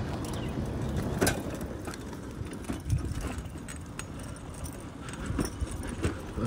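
A bicycle being handled and ridden: scattered clicks and rattles from the bike and its basket over a steady low rumble.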